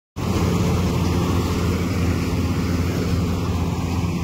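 Crop Star combine harvester running steadily as it cuts standing wheat: a loud, even drone of its engine and threshing machinery.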